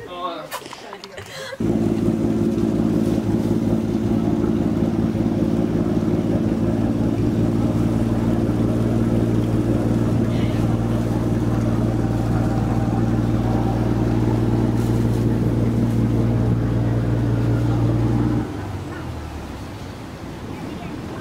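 A boat's engine running with a loud, steady low drone that does not change in pitch. It starts suddenly about a second and a half in, after a woman's brief laughter, and cuts off abruptly near the end, leaving a fainter hum.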